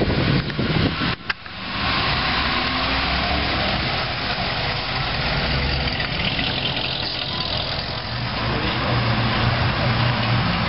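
Hot rod roadster's engine running at low speed as the car drives past and away, with a low rumble; a second car's engine comes in with a deeper, steadier note near the end.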